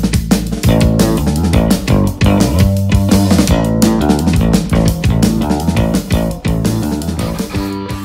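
Background music with bass and guitar over a steady beat.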